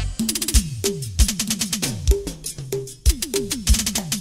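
Live Colombian porro band music in a drum-led passage: quick drum strokes whose pitch drops after each hit, mixed with rapid sharp clicks and a few strong low beats.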